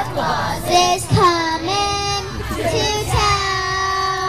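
A group of children singing a Christmas carol into a handheld microphone, holding long notes about halfway through and again near the end.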